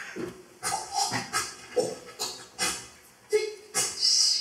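A man's voice making short, breathy, wordless vocal bursts into a microphone, about two or three a second, some of them hissy and some with a low voiced tone: improvised phonetic sound poetry.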